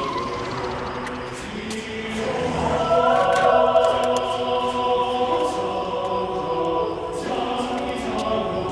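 Choral music: choir voices holding sustained chords, swelling fuller and louder about three seconds in.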